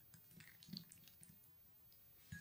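Faint stirring of a plastic spoon through a thick oily paste in a small glass bowl, with a few light taps and soft wet sounds in the first second or so.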